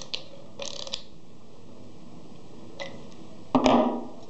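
Socket ratchet with an 18 mm socket clicking in a few short bursts in the first second as it tightens a hex retaining nut. Near the end comes a single louder knock.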